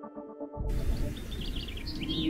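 Tail of a short music sting fading out, then about half a second in a steady outdoor ambience starts with birds chirping over it.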